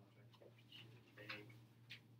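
Near silence: faint room tone with a low steady hum and a few scattered faint clicks and ticks.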